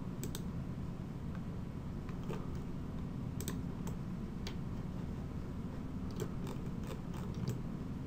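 Irregular clicks of a computer mouse and keyboard, single and in quick runs, with a cluster of several near the end, over a steady low hum.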